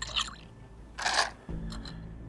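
Small pieces of rough opal clinking and rattling as they are tipped from a pot into a plastic bowl on a scale, with a few sharp clicks at first and a short clatter about a second in. A low steady hum comes in about halfway through.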